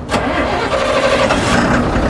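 A nearby motor vehicle's engine running, a loud steady noise that cuts in suddenly at the start.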